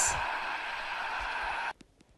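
Two young girls cheering and clapping, heard as a steady, indistinct din that cuts off suddenly near the end.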